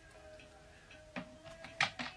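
Faint background music with held tones, and a few sharp clicks as Pokémon cards and a booster pack are handled, the loudest one near the end.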